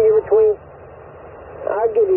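Another ham operator's voice received through the HF transceiver's speaker: thin, narrow-band speech in two short stretches, with steady receiver hiss between them.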